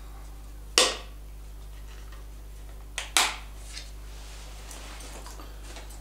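Small hard items being handled while a bag's contents are shown: a sharp click about a second in, then a quick double click around three seconds in and a faint tick after it, over a steady low hum.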